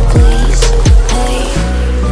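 Pop song backing track with a heavy beat of deep kick drums that drop sharply in pitch, giving way about one and a half seconds in to steady held chords.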